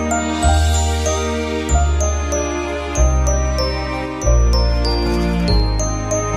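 Background music: a gentle instrumental tune with high chiming notes that step downward over sustained bass notes that change about every second and a quarter.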